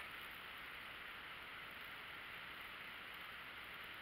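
Faint steady hiss of a quiet room's background noise picked up by the camera microphone, with no other sound.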